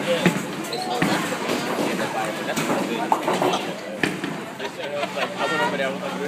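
Bowling alley din: people talking, broken by about four sharp thuds of bowling balls.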